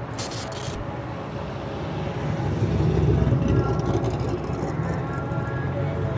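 A sports car's engine and tyres on the road as it drives toward and past, growing louder to a peak about halfway through. A short high hiss comes right at the start.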